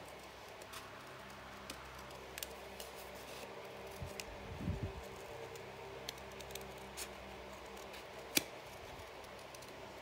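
Small scissors cutting out a piece of paper by hand, shaping it around its edge: faint scattered snips and clicks, the sharpest a little after eight seconds, with a soft low bump from the handling near the middle.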